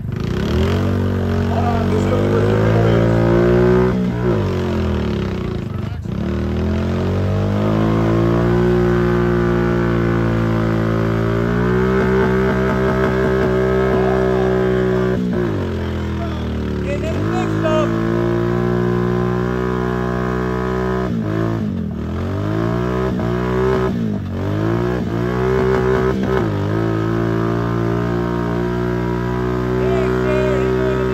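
Engine of a lifted Honda Fourtrax mud ATV running under load as it crawls through deep mud. The revs dip sharply and climb back several times, otherwise holding steady.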